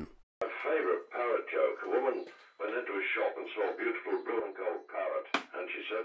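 Car's DAB digital radio playing speech through the car's speakers, sounding thin and narrow. A sharp click comes about five seconds in as the rear dash camera is plugged in, the moment that interference from the rear camera starts to knock out the radio reception.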